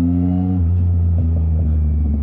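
Yamaha MT-09's three-cylinder engine breathing through a straight-piped Mivv exhaust with no catalytic converter or silencer, running at low revs while rolling. It is a loud, steady, deep exhaust note that drops a little in pitch just over half a second in.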